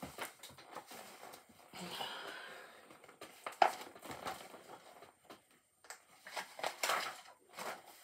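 A picture book being handled, its paper pages turned: scattered soft rustles and light knocks, with a short papery swish about two seconds in.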